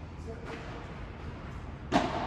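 Padel rally: a faint ball hit about half a second in, then one loud, sharp hit near the end that rings out in the large hall.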